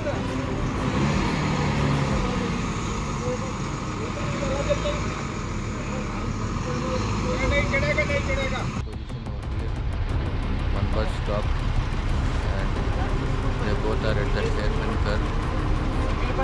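Heavy diesel lorry and bus engines running at low speed, with people's voices calling in the background. The sound changes abruptly about nine seconds in.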